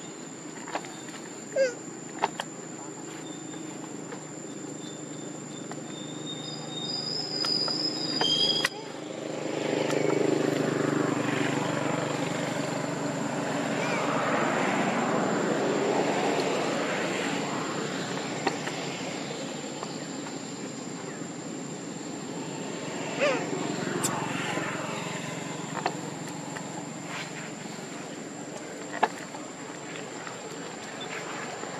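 Outdoor ambience with background voices and a steady high-pitched whine. A broad rumble swells over about ten seconds in the middle and then fades. A few short squeaks and sharp clicks.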